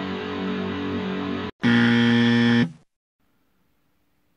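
Electric guitar playing a metal riff through an amp, breaking off about one and a half seconds in. After a brief gap, a loud steady buzzing tone sounds for about a second and then stops, leaving near silence.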